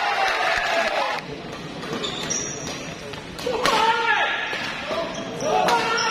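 Badminton rackets striking the shuttlecock in an indoor hall: a sharp crack about three and a half seconds in and another near the end. Spectators shout around the hits, and the crowd noise is loud for the first second before it drops.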